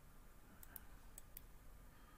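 Faint computer mouse clicks, four in about a second, over near-silent room tone.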